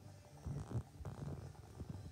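Low hum of a motorized display turntable rotating a model ship, with a scatter of small knocks and rustles.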